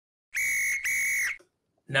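Referee's whistle sound effect: two short blasts at one steady high pitch, the second following straight after the first.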